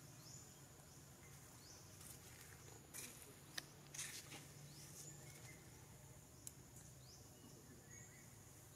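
Faint forest ambience: a steady high-pitched drone with short rising chirps every second or so, and a few sharp clicks around the middle.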